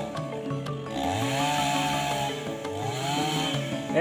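Chainsaw revving up and running on felled teak, rising in pitch twice, about a second in and again near the end, over background music.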